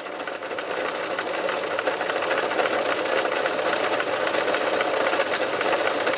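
Domestic sewing machine running steadily, zigzag-stitching over a length of yarn to make cord, picking up speed a little in the first second or so.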